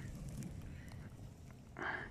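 Wood fire burning in a steel drum fire pit, with faint scattered crackles. Near the end there is one short nasal, honk-like sound.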